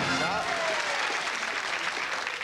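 Audience applauding, the clapping thinning slightly over the two seconds.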